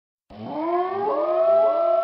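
Air-raid-style siren sound effect in a reggaeton song's intro. It starts about a third of a second in, winds up in pitch over about a second, then holds a steady wail.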